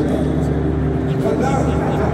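Live band music with a singing voice, heard loud and bass-heavy from among the crowd in a stadium.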